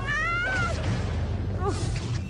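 A woman screaming in fright: a long high-pitched wail that rises and then falls, then a short cry of "¡Ay!" near the end.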